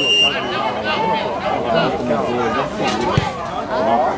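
Several spectators' voices talking over one another on the sideline, with a short knock about three seconds in.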